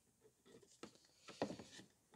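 Faint, scattered plastic clicks and rustles as an Easy Bleed pressure-bleeder hose and cap are handled and fitted onto the brake fluid reservoir.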